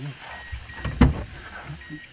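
A single sharp knock about a second in, over a low rumble inside a car.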